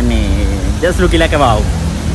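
A man talking, with a steady low rumble of road traffic underneath.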